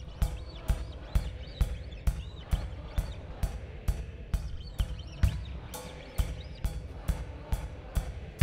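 Drum kit playing a lone steady beat, bass drum and cymbal struck together about twice a second.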